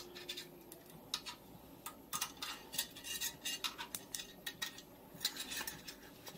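Light, irregular metallic clicks and clinks as an exhaust heat shield and its clip and bracket are shifted and pressed against a motorcycle's exhaust pipe while being fitted.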